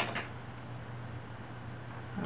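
Quiet room tone with a steady low electrical-sounding hum.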